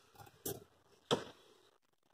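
A few faint, light clicks of piston rings touching one another as one ring is picked up from a pile. The sharpest click comes about a second in.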